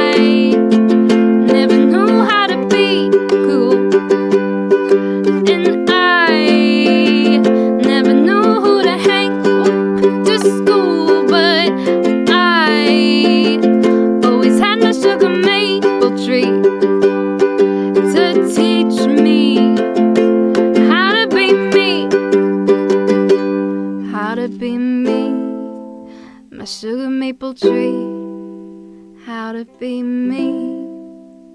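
A woman singing with strummed ukulele accompaniment. About two-thirds of the way through the voice stops, and a few last ukulele strums and chords ring out and fade as the song ends.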